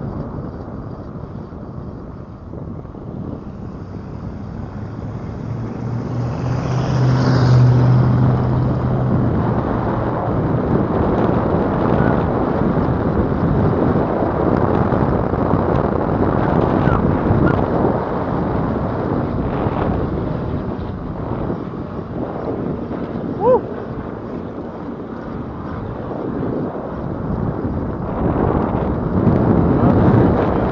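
Wind buffeting the microphone and tyre rumble over cracked asphalt as an electric bike rides along, swelling with a low hum about seven seconds in. A brief short squeak about 23 seconds in.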